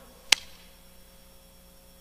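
A single sharp click about a third of a second in, then low room tone with a faint steady hum.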